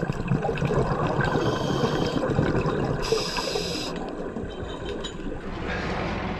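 Underwater sound of a scuba diver's regulator: bubbles gurgling from an exhaled breath, then the hiss of an inhaled breath about three seconds in.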